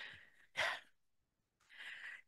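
Short, soft breaths into a close microphone: one at the start, a slightly louder one about half a second in, and an intake of breath near the end just before speech resumes.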